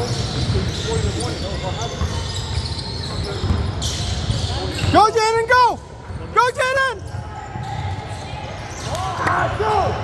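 A basketball being dribbled on a hardwood gym floor amid running footsteps, with sneakers squeaking sharply twice about halfway through and once more near the end.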